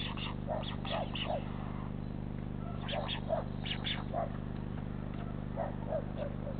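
Short animal calls in clusters of two or three, roughly one cluster a second, over a steady low electrical hum.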